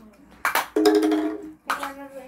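A young girl's wordless voice: a breathy burst, then a single held note at a steady pitch, and another short vocal sound near the end.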